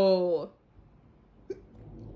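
A cartoon character's voice holds a long, falling 'ohh' that cuts off about half a second in. About a second later comes a single short hiccup from the character, who has the hiccups.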